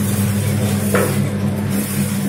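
Automatic namkeen pouch packing machine running with a steady electrical hum and a short swish repeating about every 1.7 seconds as it cycles.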